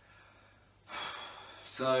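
A man's audible breath about a second in, a short breathy rush, just before he starts speaking again.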